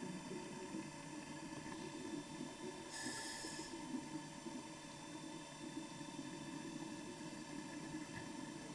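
Faint, steady background noise with a low hum under it, and a brief higher hiss about three seconds in.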